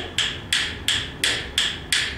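A pair of yellow pine rhythm bones clacking in a steady, even beat of about three clicks a second. The loosely held secondary bone strikes the firmly held primary one, alternating the down beat on the outward wrist roll with the off beat on the return roll.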